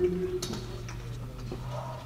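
Marker pen writing on a whiteboard: a few sharp ticks as the tip strikes the board and faint strokes, over a steady low hum.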